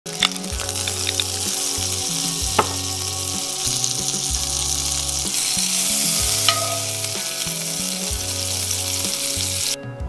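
King salmon heart frying in hot oil in a pan: a steady sizzle that grows louder about halfway through and cuts off suddenly near the end, with a few sharp clicks from the spattering oil.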